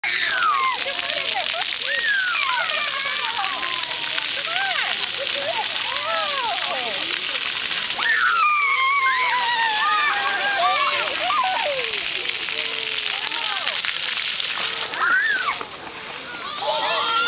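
A splash-pad fountain jet spraying steadily out of the ground, with splashing and sloshing from feet in the shallow water. High-pitched voices call and shout over it.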